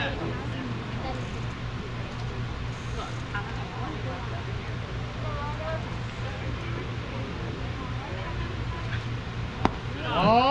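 Pitched baseball smacking into a catcher's mitt: one sharp pop near the end, over a steady low hum and faint distant voices.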